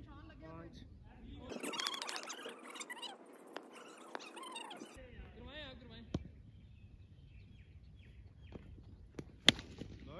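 Distant men's voices calling across an open field, with a sharp crack near the end: a cricket bat striking a taped tennis ball.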